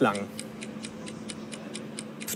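Rapid, even ticking of a countdown clock sound effect, about five ticks a second, over a faint steady hum: the one-minute timer of a quick-fire question round running down.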